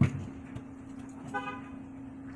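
A soccer ball kicked with a single thud at the start, then a short vehicle-horn toot about a second and a half in, over a steady low hum.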